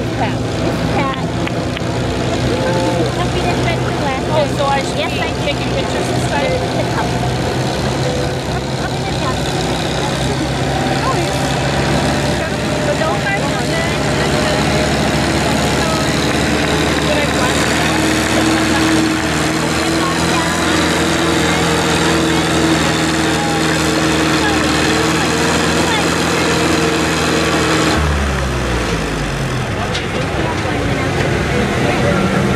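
Antique farm tractor engine pulling steadily under load as it drags a weight-transfer sled slowly down the track. Near the end the engine note drops as the tractor slows to a stop.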